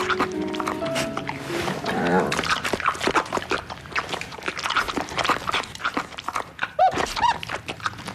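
A dog eating from a plate, a fast run of smacking, chewing and gulping sounds over soft background music.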